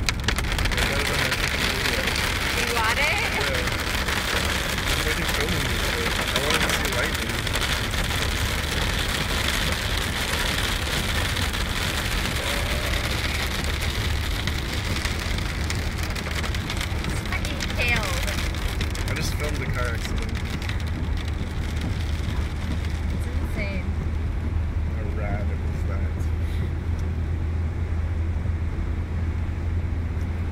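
Rain on a moving car, with tyres hissing on the wet road, over a steady low engine and road drone heard from inside the cabin. The rain noise is heaviest for the first ten seconds or so and thins out later, while the low drone grows stronger.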